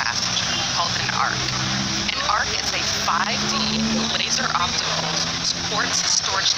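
Indistinct voices talking over a steady rushing background noise.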